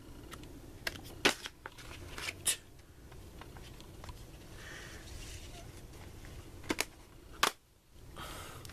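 CD jewel cases and a CD booklet being handled: a few scattered sharp plastic clicks and knocks over faint room noise.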